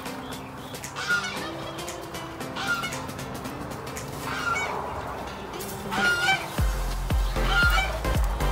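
Background music: held notes with a short honk-like tone that recurs about every second and a half, then a heavy bass beat comes in about two-thirds of the way through.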